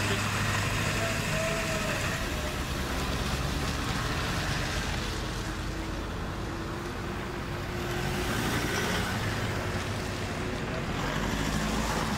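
Motor vehicles driving along a road: steady engine and tyre noise with a constant low hum.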